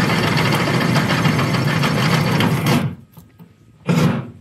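Electric drill boring a bolt hole through the steel floor of a truck bed, heard from under the truck. It runs steadily for nearly three seconds and then stops abruptly, and a short sharp noise follows near the end.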